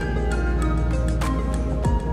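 Background music: an instrumental track with sustained tones and a steady beat.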